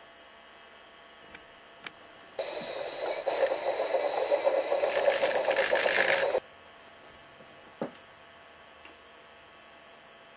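A battery-powered toy train running on plastic track, whirring and rattling for about four seconds; it starts and cuts off suddenly.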